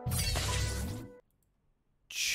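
Logo sting sound effect: a loud shattering crash with a deep boom, under a held note from the plucked-string intro jingle. It lasts about a second and cuts off suddenly.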